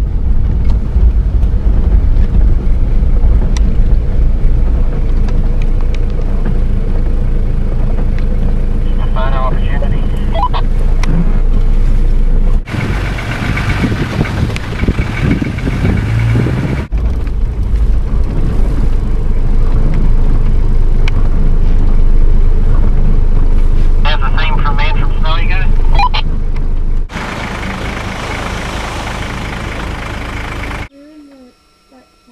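Nissan Patrol four-wheel drive on the move: a steady, loud low rumble of engine and road noise. The sound changes abruptly three times, as if cut between separate stretches of driving.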